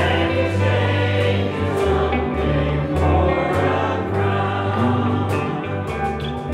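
A church worship team singing a hymn together, with several voices on microphones over acoustic guitar and sustained low bass notes.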